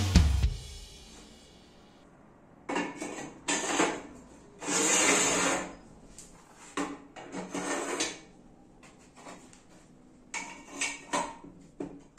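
Steel parts being handled on a steel workbench: a few metallic knocks and scrapes, with one longer scrape about five seconds in, then a scatter of light clicks and rattles near the end.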